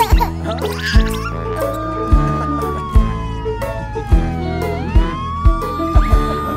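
Upbeat children's song music with a kick drum about once a second, under a siren sound effect that rises about a second in, slides slowly down, then rises again near the end.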